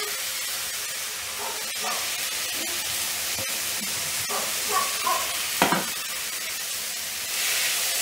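Chopped tomatoes hitting hot oil and sautéed onions in a nonstick kadai, sizzling steadily, with a few sharp knocks of the bowl and spatula against the pan. The sizzle grows louder near the end as the tomatoes are stirred in.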